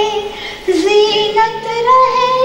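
An elderly woman singing in a high voice, holding long notes with a wavering pitch; she breaks off briefly about half a second in, then sings on.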